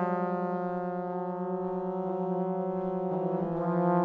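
Three trombones sustaining a held chord; about three seconds in the chord changes, the parts moving to new notes one after another.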